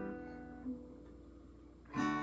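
An acoustic guitar chord, strummed just before, rings on and slowly fades. A new chord is strummed near the end.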